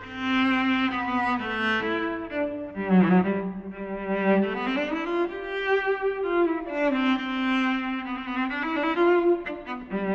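Solo cello, bowed, playing a slow melody of long held notes, with a rising slide between notes about four seconds in.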